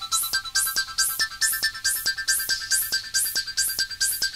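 DIY analog modular synthesizer playing a fast arpeggio-like pattern of short bleeping notes run through analog delays, the pattern slowly climbing in pitch, over a steady pulse of high swept noise bursts about two or three a second.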